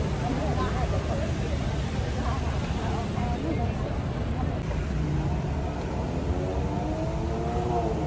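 Street traffic with a steady low rumble. From about five seconds in, a vehicle engine climbs slowly in pitch as it accelerates, and faint voices come and go.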